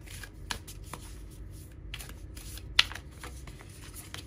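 A deck of oracle cards being shuffled by hand: cards sliding against each other with short swishes and scattered sharp clicks, and one louder snap a little before three seconds in.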